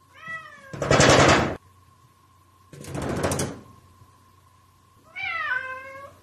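A cat meows twice, each a short falling call, one at the start and one near the end. Between the calls come two bursts of rapid rattling knocks from a glass-paned sliding door shaking in its frame, the first the loudest. A faint steady high tone runs underneath.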